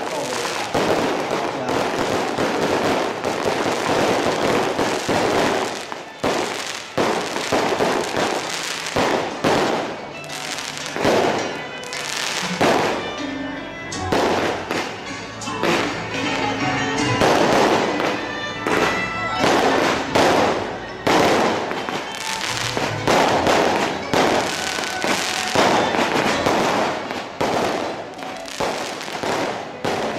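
Firecrackers going off in a dense, continuous crackle of rapid pops, with festival music mixed in through the middle.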